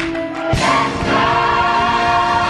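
Gospel church choir singing with a steady beat underneath; the music swells loudly about half a second in and stays full.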